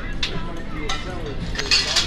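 Store background of soft music and indistinct voices, with a light clink or two of ceramic and glass items being moved on a metal wire cart.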